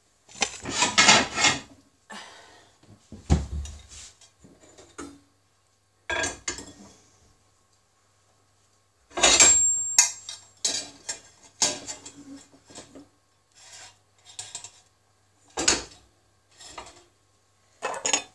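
Clatter and knocks of a wire cooling rack, a glass mixing bowl and a board being handled on a cooker top while a microwaved sponge cake is turned out of the bowl onto the rack. The sound comes in short bursts with silent gaps, with a dull thump about three seconds in.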